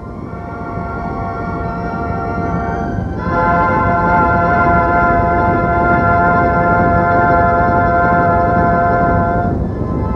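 Soundtrack music: sustained held chords that grow louder, with a change of chord about three seconds in and another near the end.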